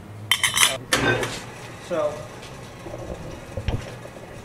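Spun copper bowl and steel spinning chuck clinking together as they are handled, a quick run of sharp metallic clinks under a second in. A dull knock follows near the end.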